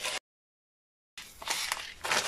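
About a second of dead silence where the audio is cut, between soft rustling. Then faint crinkling of a plastic packet and light ticks as hulled sesame seeds are shaken out onto a floured board.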